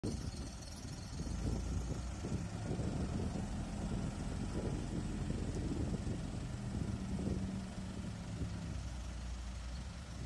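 Diesel engine of a Case backhoe loader running under load as the machine drives and turns, engine speed holding steady for several seconds and easing off near the end.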